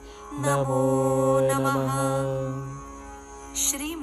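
Devotional mantra chanting sung to music: the voice holds one long steady note for about two seconds, then fades to a softer passage before a new phrase begins at the end.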